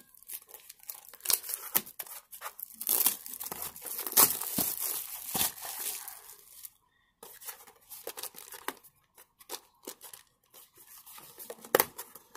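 Plastic shrink wrap being torn and crinkled off a cardboard trading-card blaster box, in irregular crackles and short rips, with a brief pause about seven seconds in.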